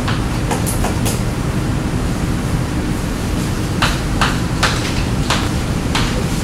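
Short scratchy strokes of writing on a board: a few quick strokes in the first second and more about four to five seconds in, over a steady room rumble and hiss.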